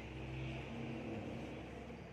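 A steady, low engine hum of a passing motor vehicle or aircraft, holding one pitch throughout.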